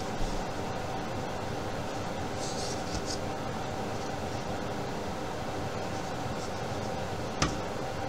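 Steady background room noise, like a fan or air conditioner running, with a few faint light taps as cups of paint are handled.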